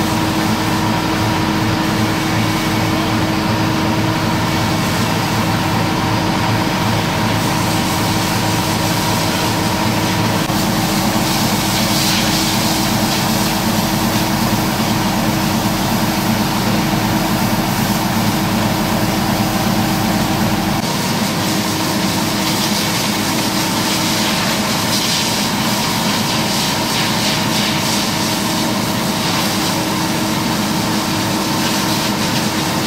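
A water tanker truck's engine runs steadily, with the hiss of a high-pressure hose jet spraying the pavement.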